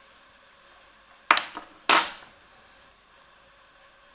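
Two sharp clinks about half a second apart, as a metal teaspoon and a small glitter pot are set down on a tabletop; the second rings briefly.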